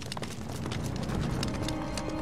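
Background music with a quick, uneven patter of footsteps and light clinks from a group of armoured guards moving on foot over paving.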